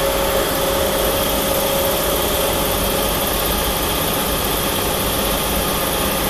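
Steady, even mechanical running noise, like machinery droning in a workshop, with a faint steady tone in the first two seconds.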